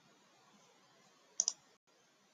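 Two quick computer mouse clicks about a tenth of a second apart, about one and a half seconds in, over a faint hiss.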